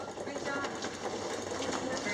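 Wheeled stretcher trolley rattling continuously as it is pushed over a tiled floor.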